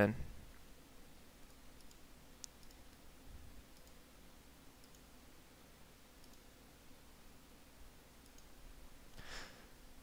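A few faint computer mouse clicks over quiet room tone, the clearest one about two and a half seconds in.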